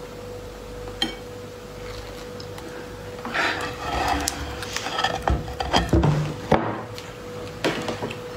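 Durian husk segments being pried and pulled apart by hand, with rustling and creaking from about three seconds in and several sharp knocks between about five and seven seconds, over a steady low hum.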